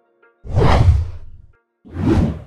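Two whoosh transition sound effects. The first swells up about half a second in and fades away over about a second. The second starts just before the end.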